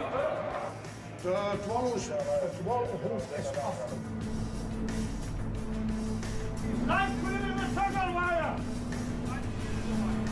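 A man speaking, then a brief laugh near the end, over background music. From about four seconds in, a steady low drone runs underneath.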